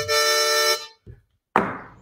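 Harmonica chord held for under a second, then stopping. After a short gap, a sudden loud burst of noise that dies away over about half a second.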